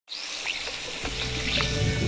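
A steady hiss, with a low music bed coming in about a second in and growing louder.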